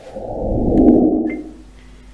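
A muffled low rush of air or rustle on a microphone, swelling and fading over about a second and a half, then a faint steady hum.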